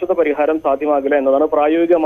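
A man speaking over a telephone line, the voice cut thin by the phone's narrow sound.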